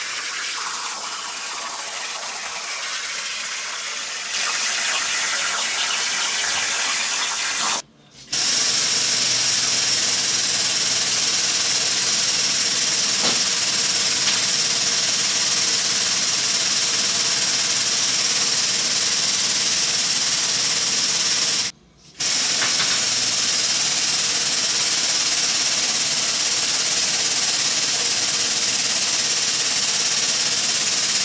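CNC plasma cutter's torch hissing steadily as it cuts steel plate. The hiss breaks off sharply twice, about 8 and 22 seconds in, and a high steady whine runs with it from the first break on.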